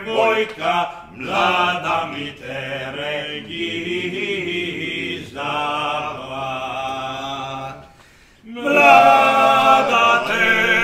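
Two men singing unaccompanied in traditional Dalmatian two-part folk style, one voice lower and one higher, on long drawn-out notes. The singing breaks off briefly near the end and comes back louder.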